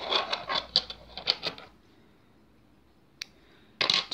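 Fingers working thread and a needle through a small needle-lace flower close to the microphone: a run of scratchy rubbing strokes for the first second and a half, then quiet with a single click about three seconds in.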